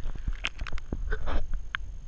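Sound heard underwater through a waterproof camera housing: a string of sharp clicks and knocks over a low rumble of water movement, as a caught largemouth bass is held in the water.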